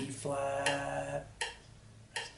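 A man's voice singing a held low note, the note name 'B flat', for about a second, then fading. Short sharp clicks keep a steady beat about every three-quarters of a second.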